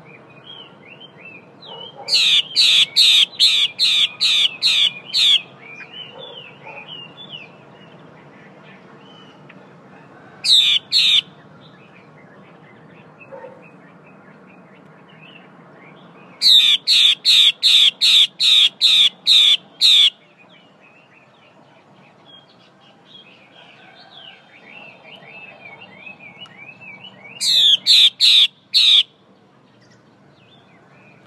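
Female Chinese hwamei giving its harsh 'te' call, a type of call kept birds use to excite males. It comes in four loud bursts of sharp, repeated notes at about two to three a second, the longest near the start and in the middle, with soft twittering between.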